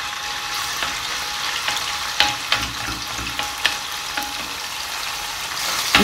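Diced raw chicken breast sizzling in hot oil in a pan, with a few scrapes and taps of a wooden spatula stirring the pieces.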